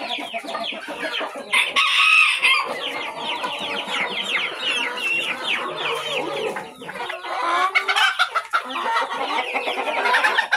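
A large mixed flock of chickens clucking and calling, many short falling calls overlapping, with one louder, longer call about two seconds in.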